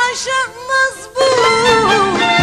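A woman singing a long, ornamented Arabic vocal phrase with vibrato, almost unaccompanied at first; the band accompaniment swells back in just over a second in.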